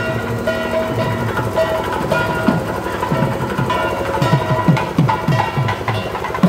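Procession band music: saxophones play a sustained melody over a drum. The drum's strokes fall in pitch; they come in about two and a half seconds in and grow more frequent.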